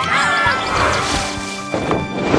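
A dumpster lid banging open once near the end, over background music.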